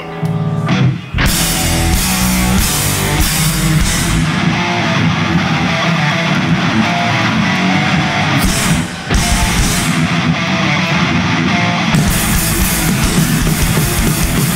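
A rock band playing a heavy metal song live on an Explorer-style electric guitar, bass and drum kit. The distorted guitar riff sounds alone for about a second before the full band comes in. There is a brief break about nine seconds in, then the full band again with cymbals near the end.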